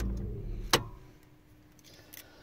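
Inside a car, a low steady hum dies away within the first half second, set between two sharp clicks, the second about three-quarters of a second in. Then it is quiet.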